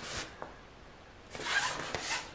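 Nylon drawstring bag rustling as it is handled and shifted, a short crinkly rustle near the end after a faint brush at the start.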